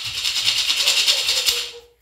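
Hand-held gourd rattle (maraca) shaken rapidly and steadily, stopping suddenly near the end.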